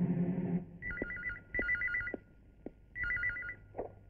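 Telephone ringing with a warbling two-tone ring: two short rings close together, then a third about a second later, with a soft knock just after it. A music cue ends about half a second in, just before the first ring.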